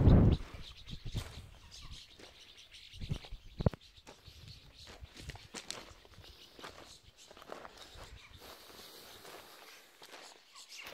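Footsteps crunching on a gravel path, with a loud low thump at the very start and two sharper thumps a little after three seconds in.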